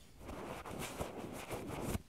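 Rustling and scraping of a phone being handled and moved, its microphone rubbing against a hand or fabric, with a few sharp clicks; it stops abruptly at the end.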